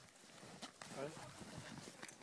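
Faint snowshoe footsteps in snow, a few soft steps, under faint voices speaking.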